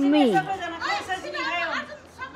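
People talking, with one voice sliding up and then down in pitch at the start; speech only.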